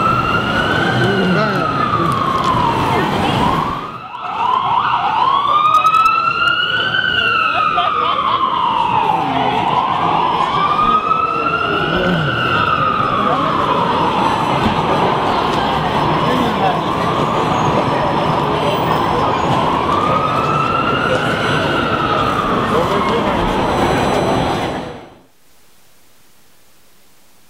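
Emergency vehicle siren in a slow wail, its pitch rising and falling several times over a haze of city street noise. It cuts off suddenly near the end.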